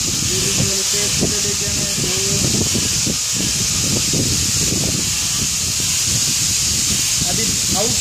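Steady hiss over a low rumble, with a faint voice about a second in and speech starting near the end.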